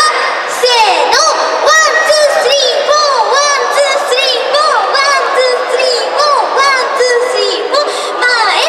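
A young woman's high voice through a stage PA microphone, in phrases with wide upward and downward pitch swings, over crowd noise.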